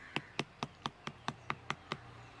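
Metal spoon mashing ripe cucumber fruit pulp in a plastic jug, knocking against the jug in an even rhythm of about four to five taps a second.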